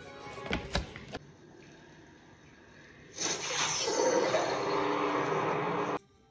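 Spiral notebook pages flipping and being handled for about a second, with quick clicks and rustles. From about three seconds in, a louder noisy sound with music in it starts and cuts off suddenly.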